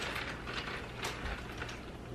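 Faint crackle and a few light clicks from a large glass jar of carbonated mixed soda over ice as it is sipped through straws.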